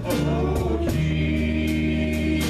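Live church band playing a gospel song: singing over acoustic and electric guitars, bass and drums, with a steady drum beat.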